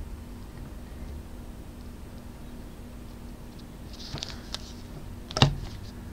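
Hard plastic graded-card slabs being handled: a few faint clicks, then one sharp knock about five seconds in as a slab is set down on the table, over quiet room tone.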